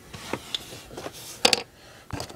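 Handling noise: a faint rustle with a few soft taps, and one sharp click about one and a half seconds in.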